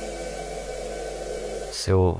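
A steady, low-pitched rushing noise with a faint hum in it, cut off near the end by a man's voice.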